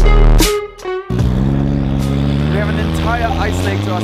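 Dubstep music with a heavy bass that cuts off about a second in, giving way to a car engine running at a steady note, with voices in the background.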